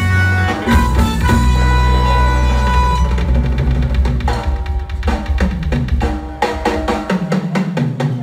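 Live konpa band playing, with drum kit, bass and keyboard. A deep bass line and held chord notes fill the first few seconds, then the groove thins to a drum-led beat.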